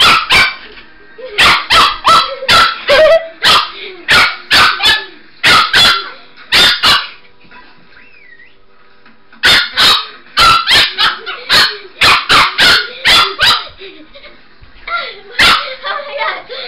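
Chihuahua puppy barking in sharp, rapid yaps, clusters of several barks about three a second, with a pause of about two seconds midway.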